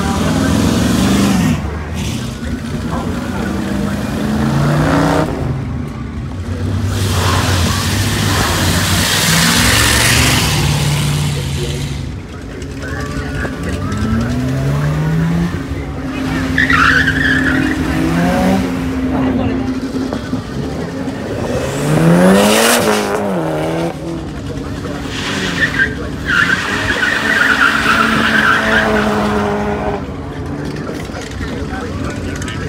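Several cars accelerating hard away from a start line one after another, their engines revving up in pitch as they pull away. Tyres squeal briefly twice, once just after the middle and again near the end.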